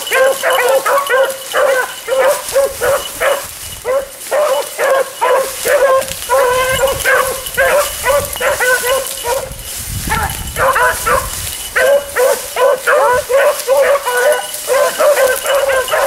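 Several beagles baying in quick, overlapping notes without a break: a pack in full cry running a track.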